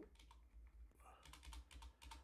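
Faint typing on a computer keyboard: a few scattered keystrokes while a terminal command is edited, including presses of a delete key that isn't responding.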